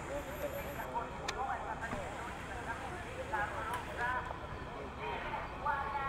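Indistinct background chatter of people talking, with no clear words.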